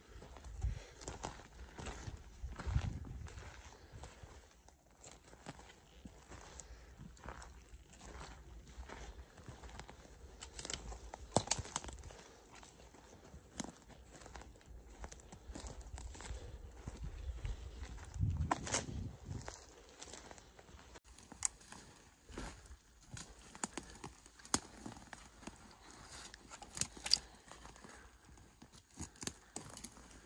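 Boots of hikers walking over a dry forest floor, an uneven crunch of dirt, pine needles and twigs with rustling of packs and brush, and a few sharper cracks of sticks underfoot. Two brief low rumbles swell up, about three seconds in and again past the middle.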